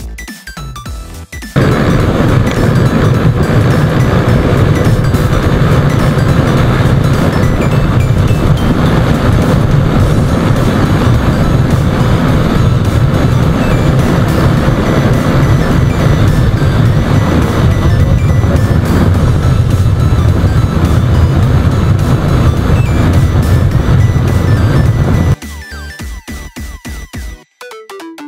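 Yamaha Sniper MX 135 underbone motorcycle ridden hard on a speed run: loud, steady wind rush over the camera microphone with the engine underneath, cutting in about a second and a half in and cutting out just before the end. Electronic music is heard briefly before and after it.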